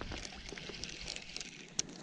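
Faint handling noise of a spinning rod and reel: scattered light clicks and ticks over a soft rustle, with one sharper tick near the end.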